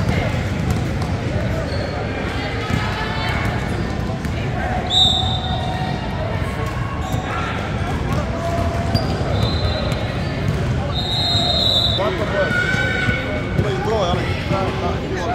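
Basketball bouncing on a gym's hardwood floor, with voices around the court. A shrill referee's whistle sounds about five seconds in, and short high squeaks come again later.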